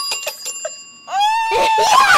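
A desk service bell rings out from a single tap and fades away over about a second, signalling that a player has finished the block design first. Then comes a girl's loud, excited cry.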